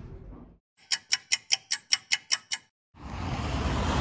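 Edited-in ticking sound effect: about nine sharp, even ticks at roughly five a second, set in dead silence. Low steady street traffic noise fades in near the end.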